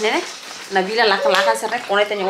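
A woman talking, with the crinkle of a clear plastic storage bag of glitter Christmas baubles being handled.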